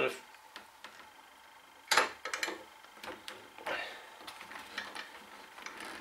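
Woodworking clamps being tightened on a glued splice joint: scattered clicks and knocks of a one-handed bar clamp's trigger and the clamp hardware, the loudest cluster about two seconds in.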